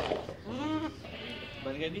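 A young goat bleating: one wavering call, about half a second long, that rises and falls about half a second in, and a shorter call near the end.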